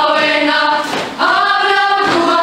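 Mixed youth choir singing held notes in harmony. The phrase breaks off briefly about a second in, and the next phrase follows.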